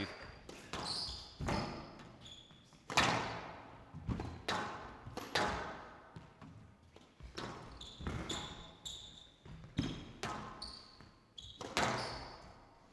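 A squash ball being struck and smacking off the court walls about once a second, each hit ringing in the hall. Between the hits come short high squeaks of court shoes on the floor.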